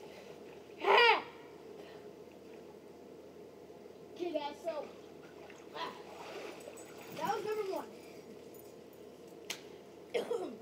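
A child's voice: one loud call about a second in, then a few quieter calls or words later on.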